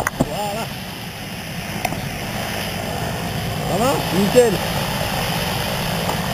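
Propeller aircraft engine running steadily, slowly growing louder. Short bursts of voice come about half a second in and again about four seconds in.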